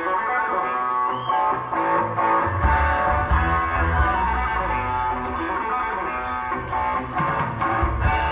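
Live symphonic rock played on stage: a rock band with electric and acoustic guitars, bass and drums together with a string orchestra, heard loud and full from within the audience.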